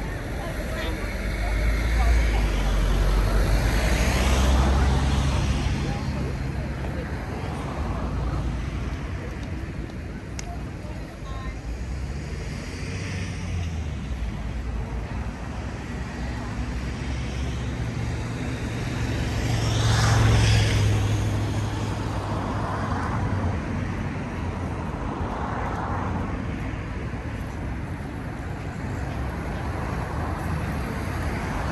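Busy street ambience: people talking nearby over steady road traffic, with a vehicle passing louder a few seconds in and another around the middle.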